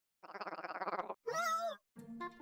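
Two short vocal sounds: first a rapid buzzing rattle, then a brief call with a wavering pitch.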